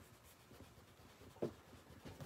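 Faint scratching of a pencil shading back and forth on thick mixed-media paper in a spiral sketchbook, with one soft tap about a second and a half in.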